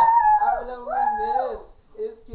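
High-pitched, drawn-out vocal howls: three long wavering cries, each sliding up at the start and down at the end, fading out near the end.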